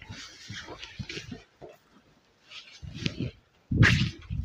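Silk saree fabric rustling and swishing as it is handled, unfolded and flipped over, in irregular bursts with a louder rustle just before the end.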